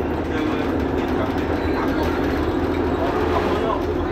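Mercedes-Benz Citaro G articulated city bus standing at idle, its engine giving a steady low hum, with people talking faintly in the background.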